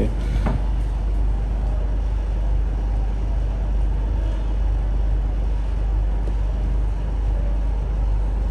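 A steady low hum of running machinery, even and unchanging, with most of its weight in the deep bass.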